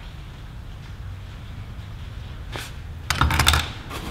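Hand tools being handled in the pockets of a tool bag: one soft click, then a quick cluster of sharp clicks and rattles about three seconds in, as the tools knock together.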